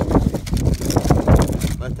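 Wind buffeting the microphone, with irregular low rumbling. A man's voice begins near the end.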